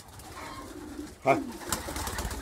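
Racing pigeons cooing inside a small wooden loft, faint and low, with a short spoken call partway through.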